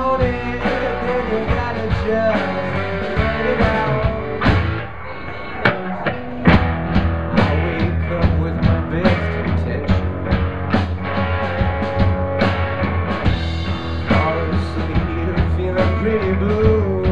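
Live rock band playing: electric guitars over a drum kit, with regular drum hits. The level dips briefly about five seconds in, then the band comes back in with hard drum hits.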